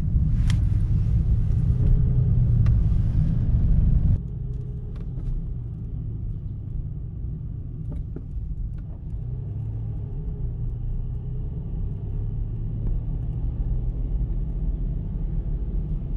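Steady low rumble of road and engine noise heard from inside a moving car. It is loud for the first four seconds, then drops suddenly to a quieter, steady rumble.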